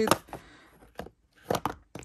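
Light clicks and taps of a cosmetic palette and plastic compacts being handled in a drawer. A few scattered taps, with a small cluster of them about one and a half seconds in.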